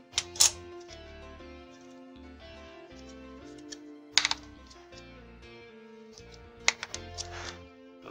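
Background music with steady held notes and a pulsing bass, over which come a few sharp plastic clicks and snaps near the start, about four seconds in, and around seven seconds in, from a rocker switch being squeezed and pried out of its white plastic housing; the switch sits stiffly.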